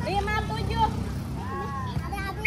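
High-pitched voices calling out and chattering over a steady low rumble.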